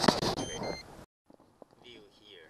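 Electronic beep from a Raymarine Dragonfly 7 sonar's fish ID alarm: two quick notes, the second lower, heard under a man's voice.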